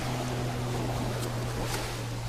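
Metal detector giving a steady low drone, over the wash of shallow surf.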